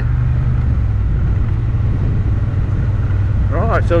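Motorcycle engine running at a steady road speed: a low, even drone that becomes less regular for a couple of seconds in the middle.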